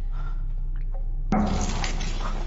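A steady low rumble of cave ambience, then a sudden loud noise about two-thirds of the way in, the kind of unexplained noise that startles the characters.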